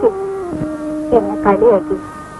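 Film soundtrack: a held note that steps down in pitch, with short voice sounds over it in the second half.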